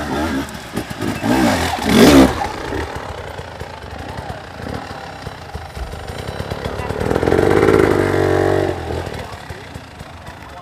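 Enduro motorcycle engine revving, its pitch rising and falling in the first couple of seconds with the loudest burst just after 2 s, then a second, steadier high rev held from about 7 to nearly 9 s.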